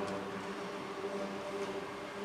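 A quiet steady hum holding a few low pitches, with no singing or speech over it.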